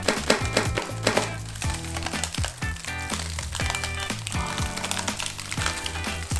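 A hollow ball of thread stiffened with dried glue being pushed in and crushed by hand, giving a run of many sharp crackles and crunches, over background music.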